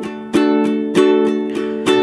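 Ukulele strummed in a steady rhythm of about three strokes a second, ringing on one chord.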